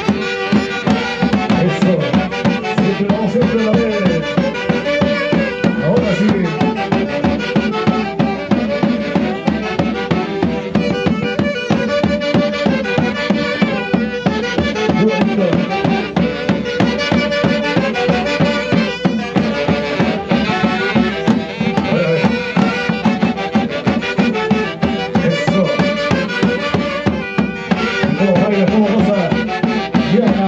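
Andean festival band of saxophones, harp and bass drums playing Santiago dance music: several saxophones carry the melody over a steady, even drumbeat.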